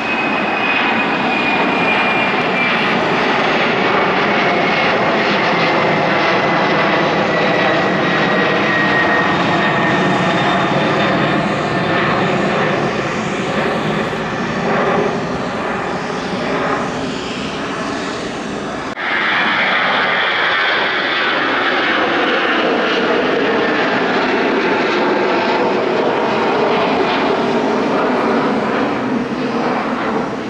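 Twin-engine jet airliners climbing out after takeoff: a steady, loud jet engine noise with a whine that falls slowly in pitch as the aircraft draws away. About 19 seconds in, a sudden cut changes to another jet's engine sound.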